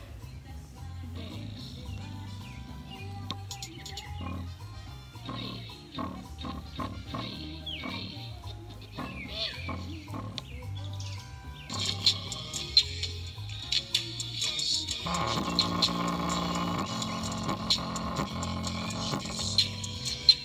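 Bass-boosted electronic music played loud through a tiny 3-watt, 4-ohm speaker driver being pushed to blow it, with a steady pulsing bass beat. The music gets louder and fuller about twelve seconds in, and fills out further a few seconds later.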